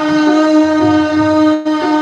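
A singer and harmonium hold one long, steady note after a short glide up into it, with soft tabla strokes underneath.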